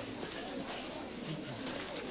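A woman's brief, low moan of labour pain about midway, over a steady background of room noise and movement.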